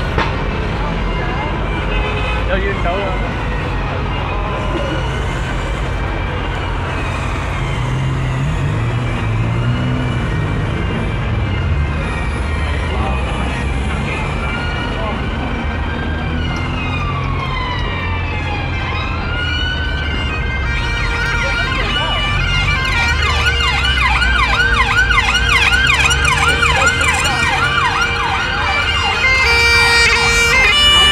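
Emergency vehicle siren in city traffic: a slow rising and falling wail that switches about twenty seconds in to a fast warbling yelp of about three cycles a second, growing louder toward the end. A steady low traffic rumble runs underneath.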